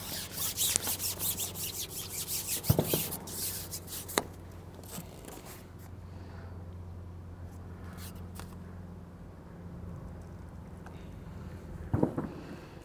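Carbon fishing pole sliding and rubbing through the hands as it is shipped back to bring in a hooked fish, with a few sharp clicks; the rubbing dies down after about four seconds. A steady low hum runs underneath.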